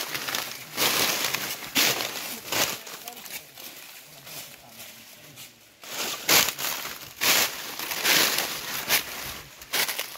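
Several people walking on dry leaf litter and twigs, each step crunching and rustling irregularly, with a quieter stretch in the middle.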